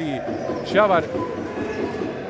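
Voices in a basketball hall, with one louder rising-and-falling call a little under a second in, over a steady background din.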